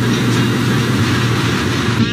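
Steady rumbling noise of a pickup truck being worked on a suspension test rig.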